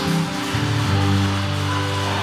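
A live worship band playing a slow, sustained intro: held chords over a steady low bass note that comes in about half a second in.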